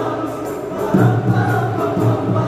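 Marawis ensemble: boys' voices singing a sholawat together over a beat of marawis frame drums and a deep hajir drum.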